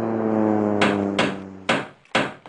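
Cartoon sound effects: a propeller plane's engine drone, steady in pitch, peaks and then fades away over the first second and a half. Three hammer blows come about half a second apart, starting about a second in.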